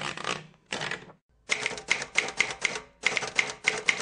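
Typewriter keys clacking in short runs of sharp strikes, about four a second, typical of a typewriter sound effect laid under on-screen text.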